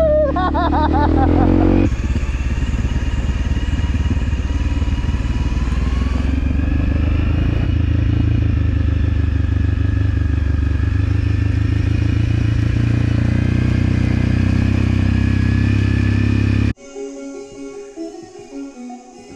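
Motorcycle engine running steadily while riding, with a brief rise in pitch about six seconds in. The engine sound cuts off suddenly near the end.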